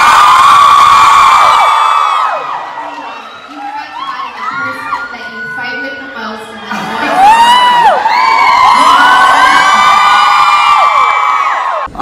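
A theatre audience screaming and cheering, many high-pitched voices at once. The first wave fades about two seconds in, and a second wave swells about seven seconds in, then cuts off just before the end.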